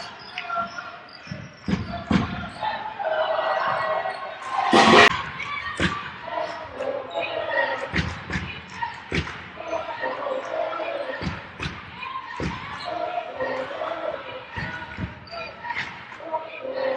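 A basketball bouncing on a hardwood court, with repeated dribble thumps over the murmur of voices in an arena. There is one brief, louder burst of noise about five seconds in.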